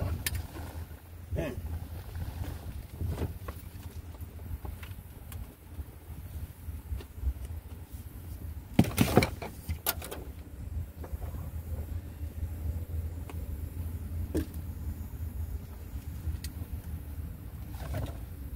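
Someone rummaging through gear in the back of a cluttered van, with scattered clicks and clunks and a cluster of loud knocks about nine seconds in, over a steady low rumble.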